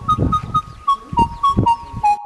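Background music: a flute plays a melody of short notes stepping up and down.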